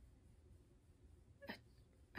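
Near silence: room tone, broken about a second and a half in by a single brief vocal sound from a woman.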